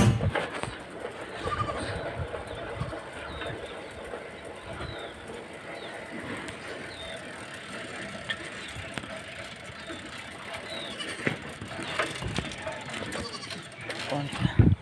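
Outdoor rural ambience with a few scattered bird chirps and faint, indistinct voices in the background.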